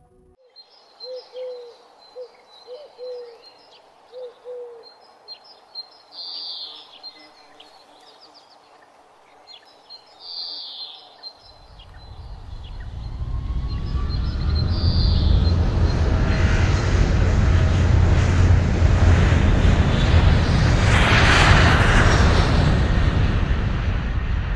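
Birds chirping, then from about halfway through a jet airliner's engines swelling into a loud, steady rumble as it takes off.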